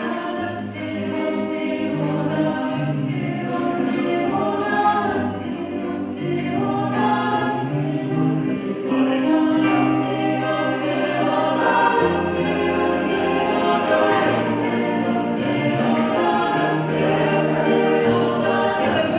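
Mixed choir singing a song in harmony, accompanied by guitars, with sustained low bass notes that change every second or two.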